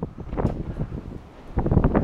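Wind buffeting the microphone in gusts, a low rumble that swells about half a second in, dips, and rises again near the end.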